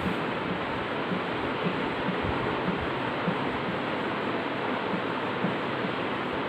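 Steady hiss of background noise, even throughout, with no distinct events.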